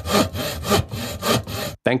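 Hand saw cutting wood in a steady rhythm of back-and-forth strokes, a sound-effect stinger that cuts off sharply near the end.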